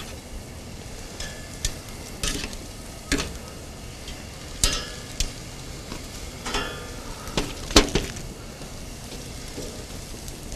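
Vegetables sizzling on a hot grill grate, with metal tongs clicking against the grate several times as lettuce and radicchio are laid on; the sharpest click comes near the end.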